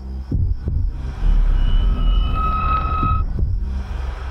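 Horror trailer sound design: a steady low drone with heartbeat-like double thumps, one pair near the start and another near the end. A high, eerie held tone rises over it for about two seconds in the middle.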